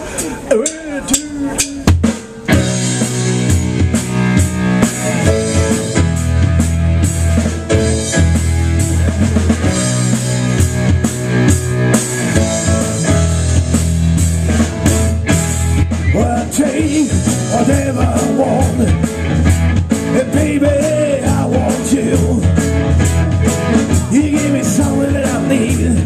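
Live rock band starting a song about two seconds in, with drum kit, bass guitar and electric guitars playing together to a steady beat. A wavering melody line joins in over the band from about the middle on.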